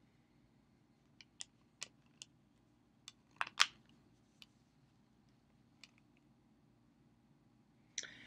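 Plastic disc case being handled and opened: a scatter of about nine sharp clicks and snaps over a few seconds, the loudest a close pair about three and a half seconds in.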